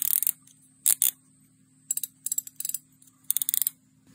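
Drag knob of a Daiwa 24 Luvias LT3000-H spinning reel being turned by hand, clicking in several short runs of rapid clicks.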